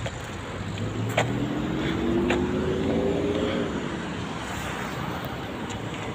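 Roadside traffic with a passing motor vehicle's engine, its pitch rising slowly from about a second in, then dropping away shortly before the four-second mark. Two short clicks about one and two seconds in.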